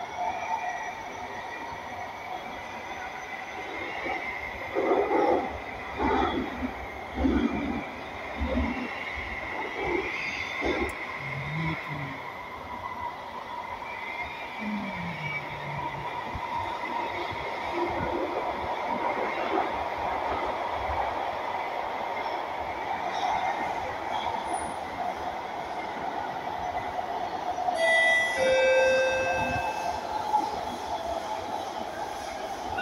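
Singapore MRT train running between stations, heard from inside the carriage: a steady rumble with a constant electric hum, and a few louder knocks from the car in the first half. Near the end a short chime of several notes sounds, the cue before the next-station announcement.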